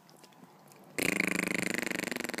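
A loud, rasping, buzzy vocal sound held at a steady pitch, starting suddenly about a second in, after faint rustling.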